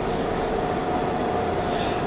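Steady road and engine noise inside a moving car's cabin: an even rumble with a faint steady drone running under it.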